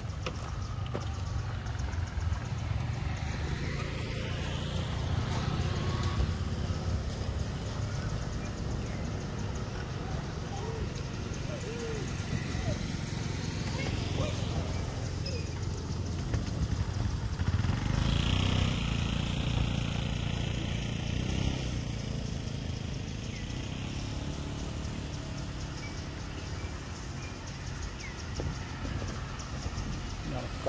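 Roadside outdoor ambience: a steady low rumble with motor traffic going by, loudest about eighteen seconds in, when a vehicle passes.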